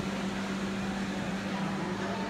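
Steady hum of a fast-food restaurant's ventilation and kitchen equipment, one constant low tone under an even hiss of room noise.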